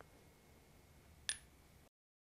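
Faint room tone with one short, light metallic click a little over a second in: the halves of a cast copper tube touching as they are stacked end to end.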